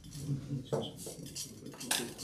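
Cutlery and crockery clinking: a few short, sharp clinks, the loudest near the end.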